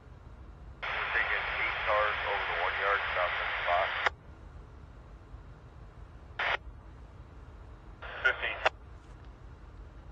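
Railroad radio transmission over a scanner: about three seconds of thin, tinny, garbled speech that starts abruptly and cuts off with a squelch click, followed later by a short blip and a second brief burst of radio talk.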